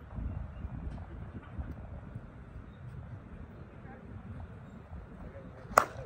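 A slowpitch softball bat (ASA TruDOMN8) hitting a pitched softball near the end: one sharp, short crack over low background noise.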